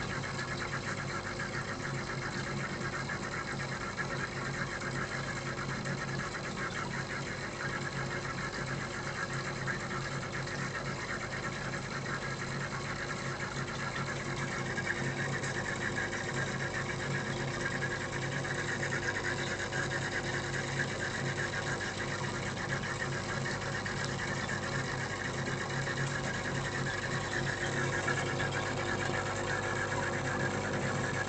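Aquarium pump running with a steady mechanical hum and an even hiss above it.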